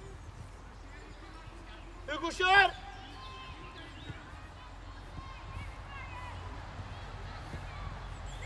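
A loud, high-pitched shout about two seconds in, then faint distant calls from players and spectators at a youth football match.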